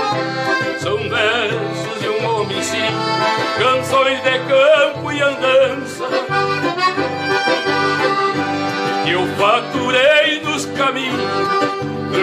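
Traditional gaúcho folk music: piano and button accordions play an instrumental passage between sung verses over guitar accompaniment with a steady pulsing bass.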